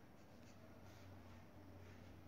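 Faint scratching of a graphite pencil on paper as Arabic letters are written, in a few short strokes, over a low steady hum.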